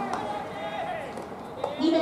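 Men's voices calling out across a ballpark during infield fielding practice, with a single faint knock about one and a half seconds in.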